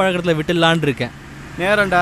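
A man talking inside a moving car's cabin, with a pause about a second in, over the car's steady engine and road hum.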